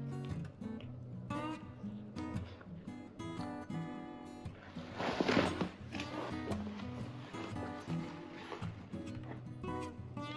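Background music with acoustic guitar, with a short burst of noise a little after halfway through.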